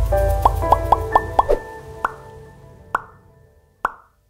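Short musical logo sting: a quick run of about five bright, short notes over a held chord and a low rumble, then single notes about a second apart as it fades, ending abruptly.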